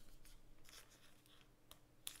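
Near silence with a few faint rustles and ticks of trading cards being handled and slid across a tabletop mat.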